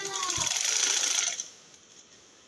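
Sewing machine running a quick burst of stitches, about a second and a half long, then stopping.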